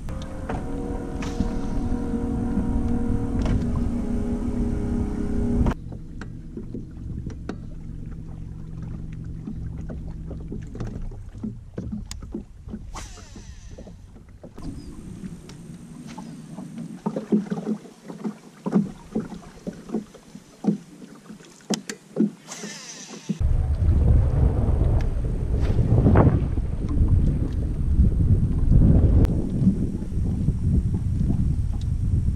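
A bass boat drifting on the water: a steady electric hum from the bow trolling motor for the first few seconds, then low water and wind noise against the hull with scattered knocks and clicks of tackle and feet on the deck. The sound changes abruptly several times.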